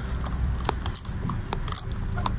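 A few light clicks and taps of a screw being turned home in the headlight mount of a Yamaha TW200 motorcycle, over a low steady rumble.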